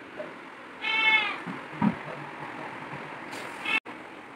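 A short, high-pitched call about a second in, lasting about half a second, and a shorter one near the end, with a soft knock in between, over a steady background hiss.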